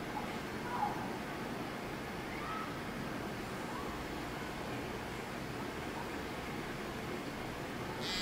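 Steady faint hiss of room tone, with no distinct event.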